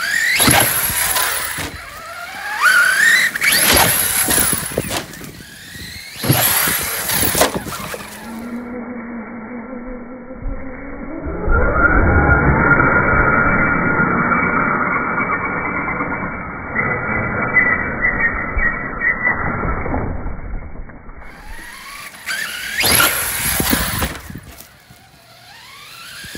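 Team Redcat TR-MT8E BE6S 1/8-scale brushless electric RC monster truck: the brushless motor whines up in repeated rising sweeps in bursts of acceleration over grass and leaves. Through a long stretch in the middle the sound is slowed down, lower and duller, before full-speed runs return near the end.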